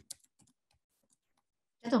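Computer keyboard typing: a few quick key clicks in the first half second, then silence until a woman starts speaking near the end.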